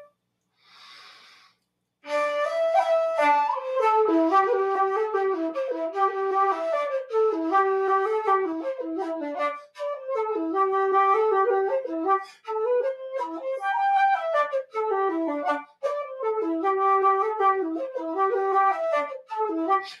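Irish flute playing a traditional reel, a fast run of ornamented notes with short breaks for breath between phrases. A soft intake of breath comes just before the tune starts, about two seconds in.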